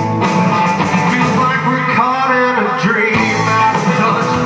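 Rock band playing live on electric guitars and drum kit. Sustained, distorted guitar chords sit under steady drumming.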